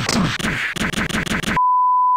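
A harsh, crackling burst of distorted noise cuts off abruptly about one and a half seconds in. A steady pure 1 kHz test-tone beep takes over, the tone that goes with broadcast colour bars.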